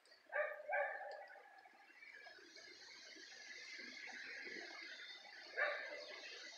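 A dog barking: two barks close together near the start and a third near the end. A steady hiss sets in about two seconds in.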